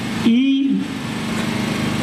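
A small engine running steadily, with a brief word from a man's voice about half a second in.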